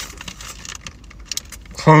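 Paper burger wrapper rustling and crinkling in the hands as the burger is handled, heard as scattered small clicks and crackles, then a man's voice comes in near the end.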